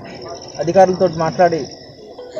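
A steady, high-pitched insect trill, pulsing slightly, with a man's voice speaking over it for about a second in the middle.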